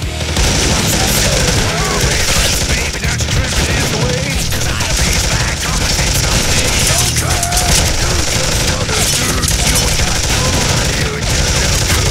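Several automatic guns firing together in a long, continuous rattle of rapid shots, starting a fraction of a second in and still going at the end.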